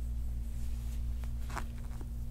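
Red plastic massage star pressed and rubbed into the skin of the upper back: a faint click, then a short rubbing scrape with small clicks about one and a half seconds in, over a steady low hum.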